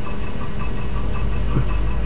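Steady low electrical hum with faint pulses above it, about four a second.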